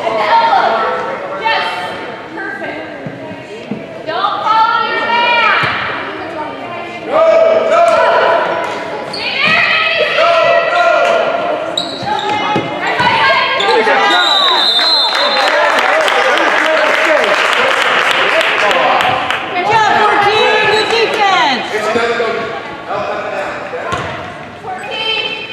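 Youth basketball game in an echoing gym: spectators shouting and cheering over a ball bouncing on the hardwood court. About halfway through there is a short high whistle, then several seconds of steady cheering and clapping.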